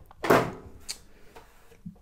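Magnetic kickstand back cover of a Chromebook tablet being pulled off: a short, loud scraping pull about a third of a second in, then a sharp click just before the second mark and a faint tick near the end.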